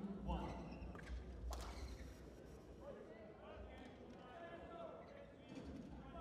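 Indistinct voices of people talking around a large sports hall, with one sharp knock about a second and a half in.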